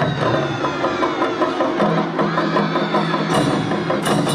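Live Sendai suzume odori festival music from a hayashi band: drums and fast, even clacking percussion with a held pitched melody line over it, the percussion strikes growing sharper near the end.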